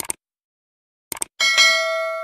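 Subscribe-animation sound effects: short clicks, then a bright notification-bell ding about a second and a half in that rings on and slowly fades.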